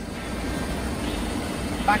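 Steady low background rumble outdoors, with a man's voice starting near the end.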